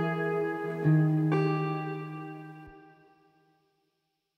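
The song's closing bars: a few plucked guitar notes struck about a second in, ringing and fading away to silence before the end.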